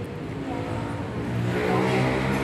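A motor vehicle engine revving up, its pitch rising in the second half.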